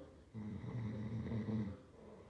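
A low, drawn-out sound from a voice, lasting about a second and a half and starting shortly after the beginning.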